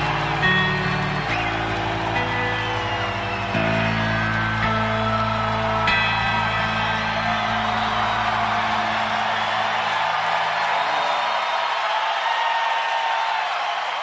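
Live rock band finishing a song, its last low chords ringing out and dying away about ten seconds in, while a concert crowd cheers and whistles throughout.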